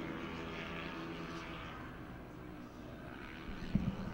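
Four-stroke racing scooter engines running at low revs as the scooters ride up to the grid, a steady, slightly wavering drone that thins out midway. A couple of short knocks come near the end.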